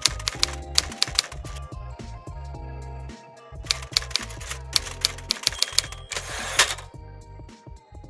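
Typewriter keys striking in quick irregular runs, a sound effect laid over soft music, with a longer rasping burst a little after six seconds in.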